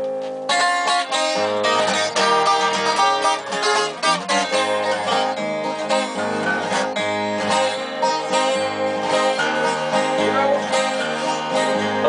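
Two acoustic guitars, one of them a twelve-string, playing an instrumental introduction to a song: a strummed rhythm with a steady bass pattern under picked melody notes.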